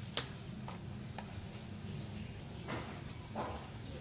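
A few light clicks and taps of a rifle scope being handled and adjusted on an air rifle. The sharpest click comes just after the start, with fainter ones through the rest, over a steady low hum.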